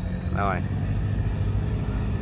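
A boat's diesel engine running steadily: a low, even drone.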